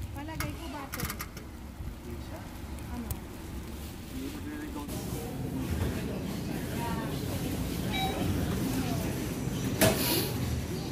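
Faint, scattered background voices over a steady hum of ambient noise, with a few clicks near the start and a brief high tone about eight seconds in.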